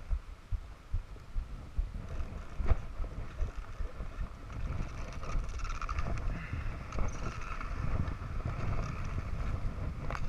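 Wind buffeting the microphone of a camera carried by a skier, with the hiss and scrape of skis sliding over groomed snow, fuller in the second half. A single sharp knock comes about a quarter of the way in.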